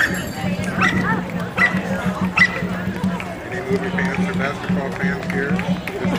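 Parade street sounds: people talking and music, with a dog barking about four times in the first couple of seconds.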